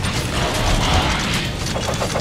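Mechanical transformation sound effect: dense whirring and clicking shifting parts, ending in a run of quick ratchet-like clicks. It is the dubbed-in Transformers-style 'transform' sound laid over the toys converting to robot mode.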